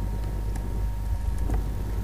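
A pause in the narration filled by a steady low electrical hum and hiss from the recording setup, with a couple of faint clicks.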